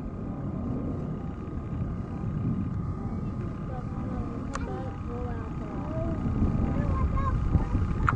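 Low, steady rumble of jet aircraft with a thin steady whine over it, and scattered voices in the background from about halfway through.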